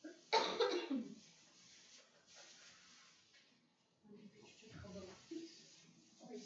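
A person coughs once, sharply and loudly, about a third of a second in. Faint, indistinct talking follows from about four seconds in.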